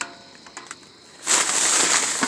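A light knock, a quiet moment, then loud crinkling of a plastic bag and the chip bags inside it as they are grabbed and pulled up, starting a little past halfway through.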